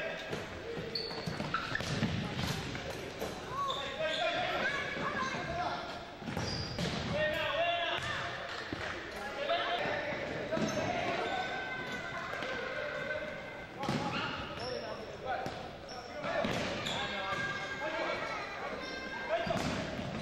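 Players shouting and calling to each other during an indoor futsal game, with scattered thuds of the ball being kicked and bouncing on the wooden gym floor, in an echoing hall.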